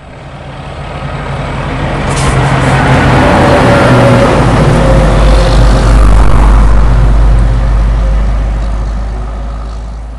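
Heavy lorry driving past, its engine and tyre noise building from faint to loud and then fading away, with a short high hiss about two seconds in.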